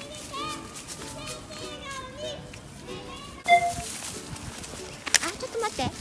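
Children's voices calling and chattering in the distance, in many short high-pitched calls, then a sudden scuffing noise about halfway through.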